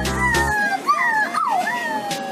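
A small dog whining in a few drawn-out cries that slide up and down in pitch, over background music with a beat.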